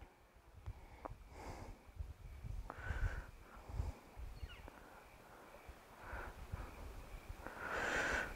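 Faint breathing close to a clip-on microphone, with light handling sounds and a couple of small clicks as hands unwind a tapered monofilament fly-fishing leader.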